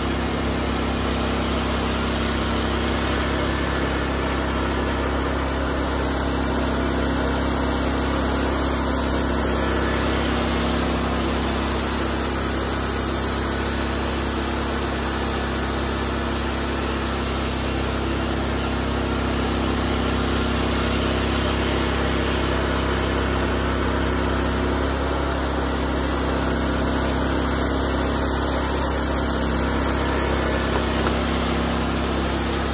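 Wood-Mizer LX150 portable band sawmill running steadily, its engine driving the band blade as the saw head moves along the log.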